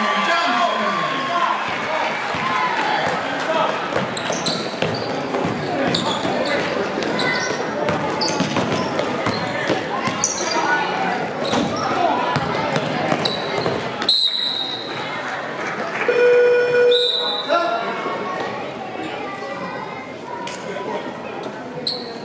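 Basketball game sounds in a gym: the ball bouncing on the court, sneaker squeaks and players' and spectators' voices. About two-thirds of the way in a referee's whistle sounds, followed by a short flat scoreboard horn blast and then another brief whistle, stopping play.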